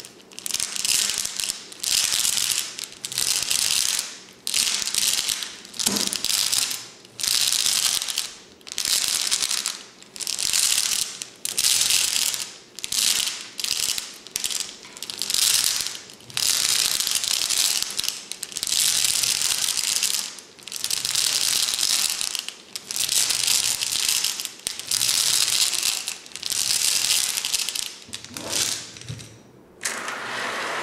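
Flat glass stones sliding and clattering along the inside of a tall glass cylinder vase as it is tipped back and forth, a rushing rattle about once a second that tails off near the end.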